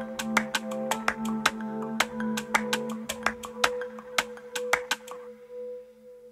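Instrumental outro of an electronic song: quick, sharp percussive clicks over sustained synth tones. The clicks stop about five seconds in, leaving a single pulsing tone that fades.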